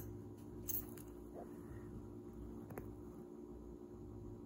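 Faint hand-sewing sounds: cloth being handled and thread drawn through it, with a brief soft rustle a little under a second in and a small tick later, over a low room hum.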